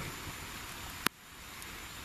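Steady hiss of background noise, broken by one sharp click about halfway through, after which the hiss is a little quieter.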